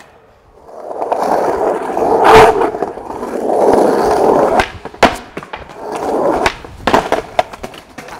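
Skateboard wheels rolling over stone paving, with a loud clack about two and a half seconds in. More rolling follows, then a few sharp clacks of the board near the end.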